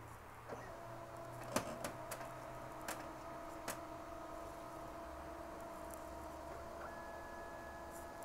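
HP Color LaserJet Pro MFP M181fw laser printer powering up and initialising: a steady whir of its motors and fan with a low hum, broken by a few sharp mechanical clicks in the first four seconds. A higher steady tone joins near the end.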